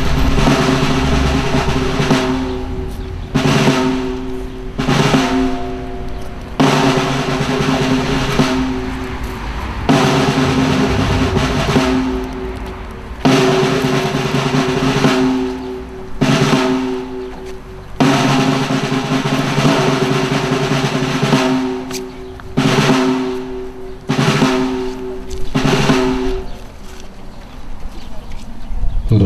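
Ceremonial snare drum rolls, played in repeated phrases of a few seconds each with short breaks between them.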